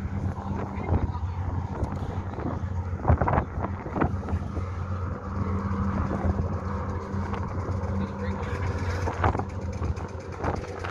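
Steady low drone of a car ferry's engines under way, heard from the open deck, with wind rushing over the microphone and a few brief gusts or knocks about three to four seconds in.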